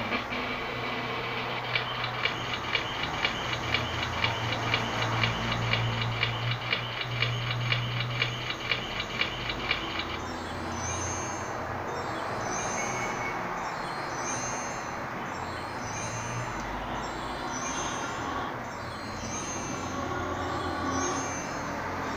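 PowerPoint slideshow sound effects played through computer speakers: a fast, even ticking for about eight seconds, then a different high sound repeating about once a second as the slides animate and change.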